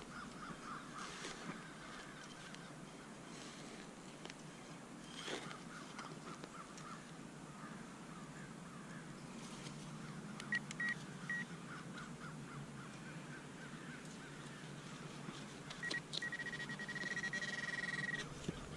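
Soft scraping and knocks of a hand digger working a soil plug, under faint bird calls. A handheld pinpointer gives three short beeps about ten seconds in, then a steady pulsing beep near the end as it sits on the target in the hole.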